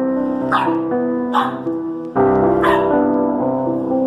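Corgi puppy yipping three times, short high yips that fall in pitch, over steady background music.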